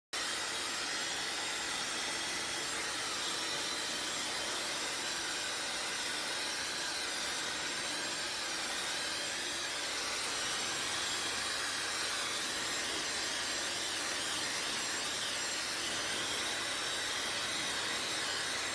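Dyson Supersonic hair dryer running on a steady setting, a constant rush of blown air.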